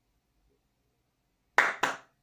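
A quiet stretch, then two quick hand claps close together near the end.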